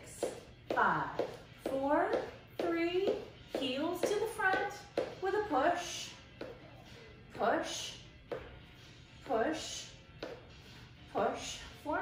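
A woman's voice calling short workout cues in bursts every second or two, over background music.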